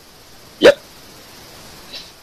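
Speech only: one short, loud "yep" just over half a second in, over a faint steady hiss.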